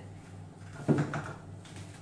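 Plastic lid of a Monsieur Cuisine Connect food processor's mixing bowl set down on the table with a single clunk about a second in, over a steady low hum.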